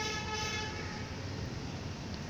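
A steady pitched tone, rich in overtones, fading out over about a second and a half, over a low steady background hum.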